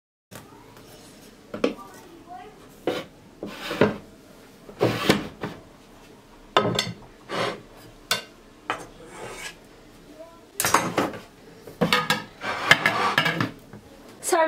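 A metal spatula scraping against a cake stand and a china serving plate, with dish clinks, as a cake is slid from one to the other. It comes as a series of short, irregular scrapes, busiest near the end.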